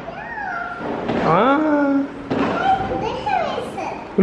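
A young girl's high-pitched, drawn-out voice sounds with no clear words, several long cries whose pitch slides up and down.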